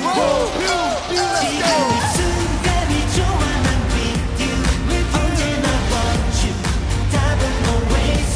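K-pop song with singing over an electronic beat. The bass is gone for the first two seconds, then a heavy, steady beat comes back in.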